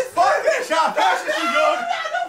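Several young men yelling and cheering excitedly, their voices overlapping with no clear words.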